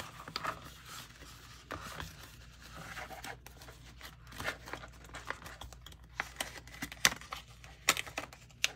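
Paper cards and cash rustling and a clear plastic pouch crinkling as they are handled and put away, with scattered small clicks and taps and one sharper click about seven seconds in.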